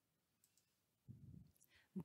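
Near silence: room tone, with a brief faint low sound about a second in, just before speech begins at the very end.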